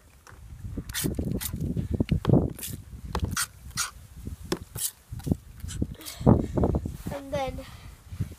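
Plastic trigger spray bottle squirted again and again, about a dozen short sprays of water mist into the box to make it damp.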